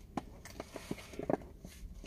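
Scattered light clicks and taps of objects being handled by hand inside a car.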